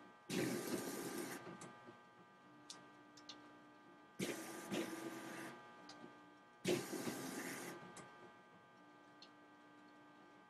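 Ricoh inkjet printer printing a nozzle check test pattern: three bursts of mechanism noise about a second long each, starting suddenly, with a low steady hum and faint clicks between them.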